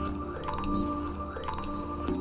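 A band playing electronic music live: a looping synthesizer pattern over a held tone and stepping bass notes, with short repeating clicks.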